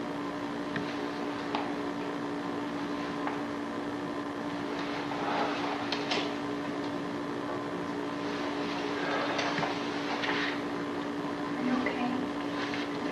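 Steady low electrical hum with an even hiss under it, the background noise of an old videotape recording, with a few faint brief sounds in the middle.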